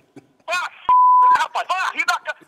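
A censor bleep: one steady electronic beep of about half a second that starts abruptly about a second in, cutting across a word in the middle of a man's speech.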